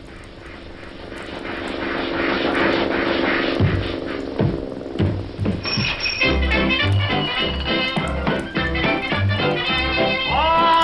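Cartoon orchestral score: a held chord over a rushing noise that swells louder for the first few seconds. From about three and a half seconds in, a bouncy tune with a steady bass line takes over.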